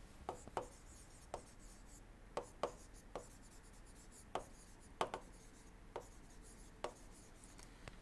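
Faint, irregular clicks of a stylus tapping and stroking on a tablet screen while handwriting, about a dozen over the stretch, over a faint steady low hum.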